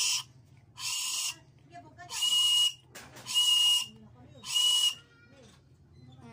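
Homemade whistle made from a ballpoint pen barrel, blown in five short, breathy blasts about a second apart, each with a shrill high note.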